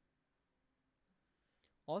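Near silence with faint room tone, then a single soft computer mouse click near the end, just before a voice starts speaking.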